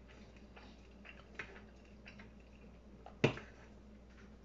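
Quiet eating sounds: faint clicks of wooden chopsticks against a pot and bowl, with one sharp, louder tap a little after three seconds in.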